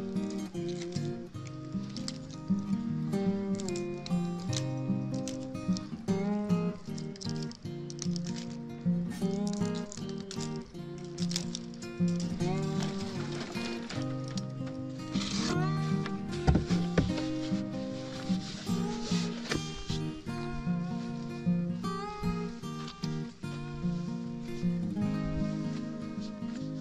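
Background acoustic guitar music with steady picked notes, and a few short knocks and rustles around the middle.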